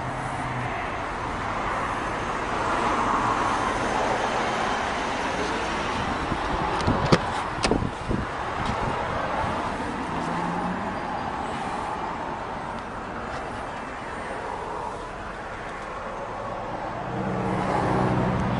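Steady outdoor traffic and car noise, with two sharp knocks about seven seconds in as the Mercedes-Benz S550's door is opened and the person gets into the car.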